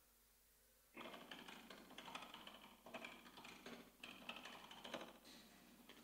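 Faint computer-keyboard typing: irregular runs of key clicks starting about a second in, as a search term is typed into PubMed.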